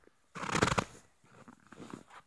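A footstep crunching on packed snow: one crunchy burst lasting about half a second, followed by a few faint crackles.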